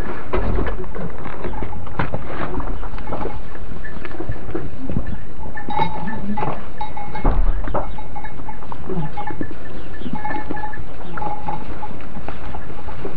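Goats and kids in a straw pen bleating in short calls, several times in the second half, over knocks and rustles from hooves and straw.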